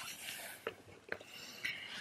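Soft breathy sounds from a woman, like whispering or exhaling, with a couple of faint sharp clicks about midway.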